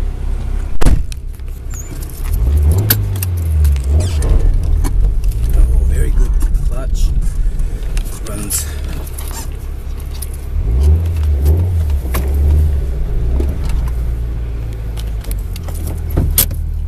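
Nissan Silvia S15 Autech's engine running, heard from inside the cabin as a low drone that grows louder twice for a few seconds. A sharp knock comes about a second in, and small clicks and rattles run throughout.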